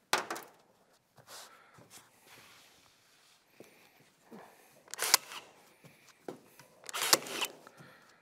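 A cordless staple gun firing staples through carpet into a board panel: three sharp shots, one at the start and two more about five and seven seconds in, with faint rustling of the carpet being handled between them.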